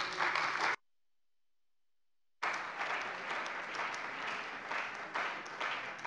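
Applause from the deputies in a parliament chamber. About a second in, the sound cuts out to complete silence for about a second and a half, then the applause resumes.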